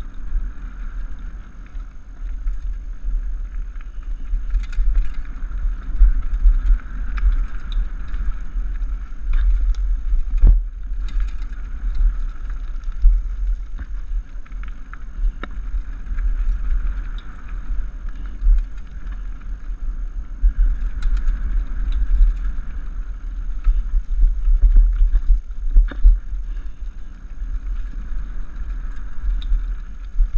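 Mountain bike descending fast on a gravel forest trail: tyre noise over loose stones with scattered rattles and clicks from the bike, under heavy wind buffeting on the microphone. One sharp knock stands out about ten seconds in.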